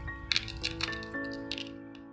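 Coarse salt crystals sprinkled by hand onto cucumbers in a plastic tub, giving a handful of sharp clicks in the first second and a half, the loudest near the start. Soft background music with held notes plays throughout.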